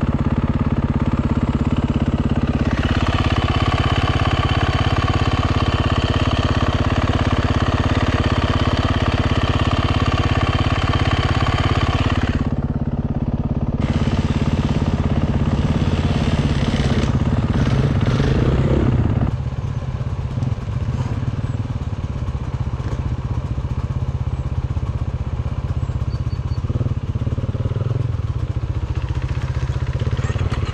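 KTM EXC enduro motorcycle engine running under throttle as the bike is ridden, pulling hard for several seconds, easing off briefly near the middle, then running quieter for the last third.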